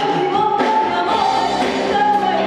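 A woman singing long, held high notes over a live band accompaniment of guitar and drums.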